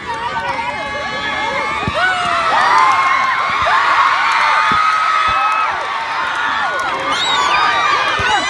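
Crowd of football spectators shouting and cheering, many voices at once. It swells about two seconds in and stays loud until about six seconds, then dips briefly.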